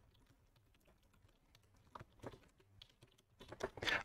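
Faint computer keyboard typing: near silence for about two seconds, then a few scattered keystrokes in the second half.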